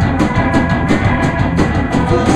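Live rock band playing with electric guitars, bass and drum kit. A steady driving beat of drum and cymbal strokes, about five or six a second, runs over sustained guitar chords.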